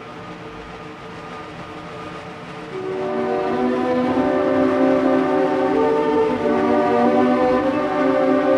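Orchestral music from a 1958 symphony orchestra recording: sustained held chords that swell into a louder crescendo about three seconds in.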